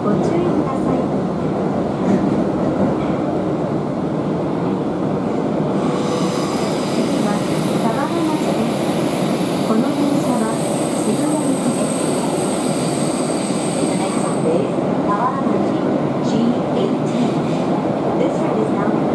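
Tokyo Metro Ginza Line 1000-series subway car heard from inside the cabin as it pulls out of the station into the tunnel: a steady running rumble. From about six seconds in, a high thin wheel squeal joins it, growing sharper near the middle and stopping a few seconds before the end.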